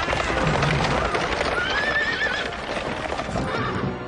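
Horses galloping: a fast, dense clatter of hoofbeats, with a horse neighing for about a second in the middle.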